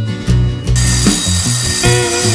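Background music over a Bosch PKS 66 A circular saw cutting through wooden planks. The cut starts a little under a second in, making a high hiss with a steady whine, on a second pass with the blade lowered to the full thickness of the wood.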